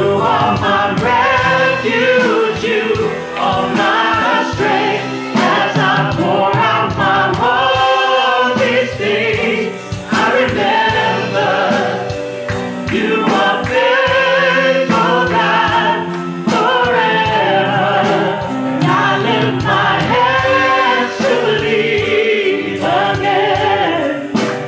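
Live congregational worship song: several women and men singing together into microphones over a band with drums, with held sung notes.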